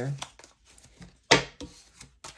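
A deck of tarot cards being handled: a faint rustle, then one short, sharp papery snap of the cards about a second and a third in.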